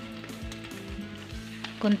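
Egg-dipped bread slices sizzling as they fry in butter in a pan, with background music with a steady beat underneath.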